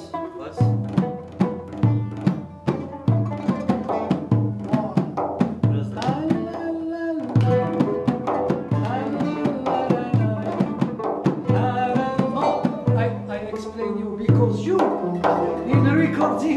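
A Turkish ensemble led by an oud and a kanun plays a melody in quick plucked notes over a steady low beat that pulses about every two-thirds of a second.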